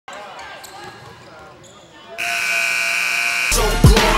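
Live basketball game sound in a large gym: a ball bouncing and faint voices. About two seconds in, a loud steady buzzer-like horn tone sounds for just over a second. It is cut off by loud music that opens with a deep, falling bass hit.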